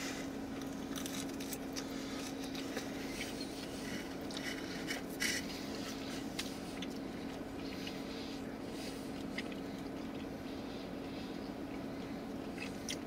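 Faint chewing of a mouthful of pizza, with a few small scattered crackles, over a steady low hum inside a car cabin.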